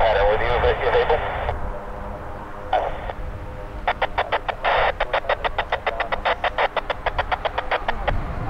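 A voice heard over a radio for about a second and a half, then from about halfway through a rapid, even run of clicks, some six a second, which is the loudest sound.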